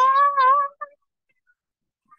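A high young voice holds a long drawn-out sung note that rises slightly in pitch and breaks off just under a second in.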